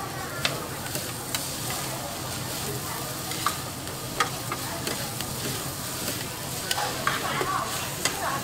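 Flat noodles sizzling on a flat iron griddle as metal spatulas toss them, with sharp clacks of the spatulas striking the griddle every second or so and several in quick succession near the end.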